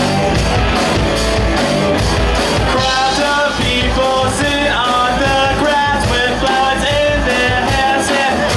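Live rock band playing electric guitars, bass and drums, loud and steady, with a vocalist singing a stepped melody into a handheld microphone from about three seconds in.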